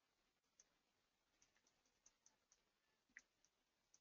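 Near silence, with a few very faint scattered clicks, one a little louder about three seconds in.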